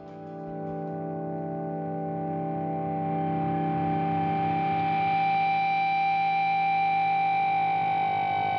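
A sustained ambient chord of several held notes swells in from quiet over the first few seconds and then holds steady as a drone.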